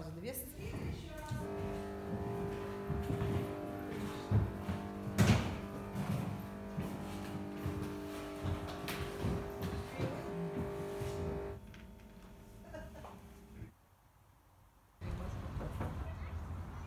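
A droning chord of several steady held tones, with two loud knocks over it about four and five seconds in. The drone fades out late on, leaving a moment of near silence before an outdoor background sound begins.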